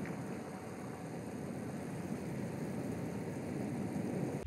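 Steady engine and wind noise from a race camera motorbike riding alongside a cyclist on a climb, a low even rumble with no distinct beats.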